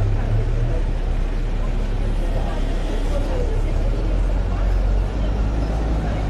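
Street ambience: a steady low traffic rumble with faint voices of passers-by.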